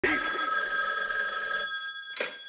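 A telephone ringing: one long ring that starts suddenly and dies away shortly before the end.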